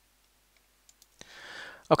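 Near silence for about a second, then a few faint clicks and a short breath, and a man's voice starting at the very end.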